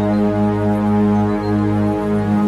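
Meditation music: a sustained electronic drone tuned to G-sharp at 207.36 Hz, the so-called Uranus planetary frequency, with a tone an octave below and a stack of overtones above. It swells and eases slightly in loudness without any clear beat.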